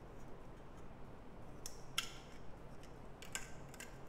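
Faint clicks of small plastic LEGO pieces being handled and fitted together: a few light clicks, the sharpest about halfway through.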